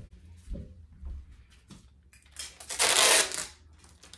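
Tape being pulled off a roll in a small dispenser box: a harsh, ripping rasp about a second long, a little past halfway, after a few light taps and clicks of handling.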